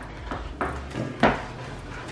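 Chef's knife chopping yellow squash on a wooden cutting board: a few uneven knocks of the blade striking the board, the two loudest about half a second and a second and a quarter in.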